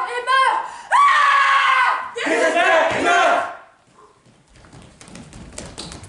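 Actors' voices crying out and screaming without words: short high cries, then two long loud screams that die away about three and a half seconds in. Faint shuffling footsteps on the stage follow.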